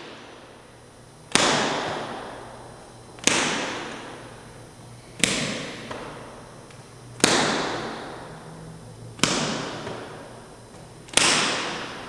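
Six sharp cracks, evenly spaced about two seconds apart, each dying away slowly in a long echoing tail, over a faint steady low hum.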